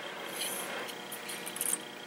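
Quiet room tone with faint rustling as braided fishing line is drawn through a fluorocarbon leader loop between the fingers.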